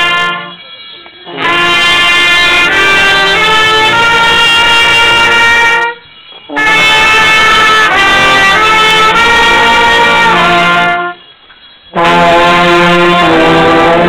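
A small brass band, trumpets among them, plays a slow tune in held chords. The phrases last about five seconds, with brief pauses between them three times.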